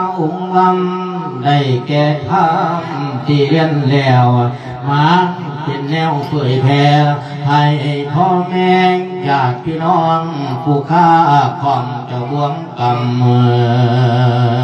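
A Buddhist monk sings a Thai Isan thet lae, a sermon chanted as melody into a microphone. His male voice holds long lines that waver and bend in pitch, with only brief breaks for breath.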